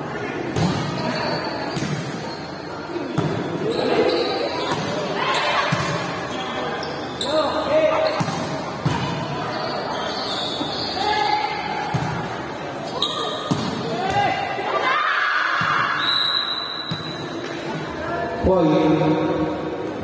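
A volleyball rally in a large echoing hall: a series of sharp slaps of hands and arms striking the ball, over players' and spectators' shouting voices. Near the end the rally stops and a group of voices starts a chant.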